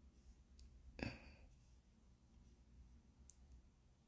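Near silence, broken by one sharp click about a second in and a faint tick near the end.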